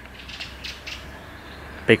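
A few light, irregular mechanical clicks and ticks from handling a time-trial bicycle and its wheels.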